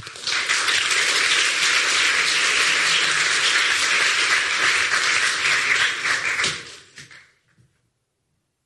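Audience applauding, a dense steady clapping that begins right after a speech ends, lasts about six seconds and dies away, leaving near silence.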